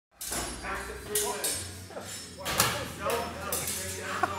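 Sword blades clashing a few times, some strikes leaving a short metallic ring, amid people talking and calling out.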